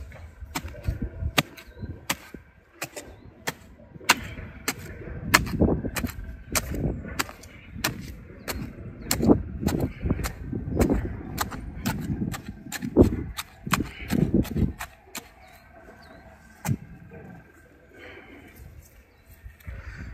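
Spade blade chopping repeatedly into stony soil at the bottom of a planting hole, loosening it: a run of sharp, irregular clicks with duller thuds from heavier strokes, thinning out near the end.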